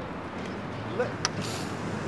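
A car's rear door being opened by hand over steady street noise, with one sharp latch click a little over a second in.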